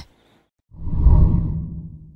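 A deep whoosh sound effect: it swells up about two-thirds of a second in and fades out over the next second or so.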